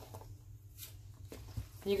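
Spatula folding whipped cream into pudding in a mixing bowl: faint soft scrapes and squishes against the bowl, over a low steady hum.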